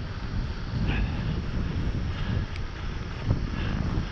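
Wind buffeting the microphone of a bicycle-mounted action camera while riding, over the low rumble of the tyres on cracked asphalt, with a brief knock a little past three seconds in.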